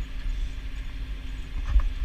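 Tractor engine running steadily under load, heard inside the cab while it pulls a deep ripper through clay soil, with a low rumble and a faint steady hum. A single brief knock comes near the end.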